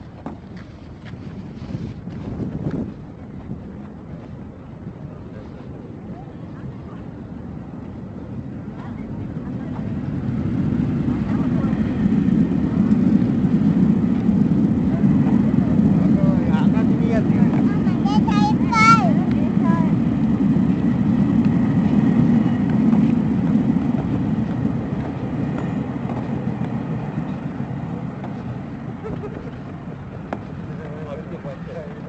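A low rumble of a passing vehicle that builds over several seconds, stays loud for about ten seconds and then slowly fades. A brief warbling high sound rises and falls in the middle of it.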